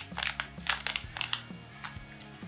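Crinkling of a metallized anti-static plastic bag being handled, a run of irregular sharp crackles.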